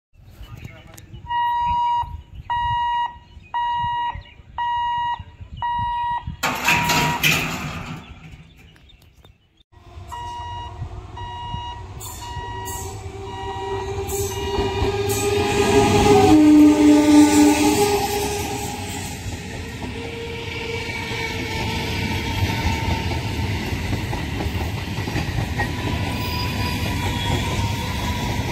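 A run of regular electronic beeps, about one every 0.7 s, then after a short gap an electric multiple-unit local train approaching and running past with a continuous rumble of wheels on rails. A short horn note sounds at its loudest point, about two-thirds of the way in.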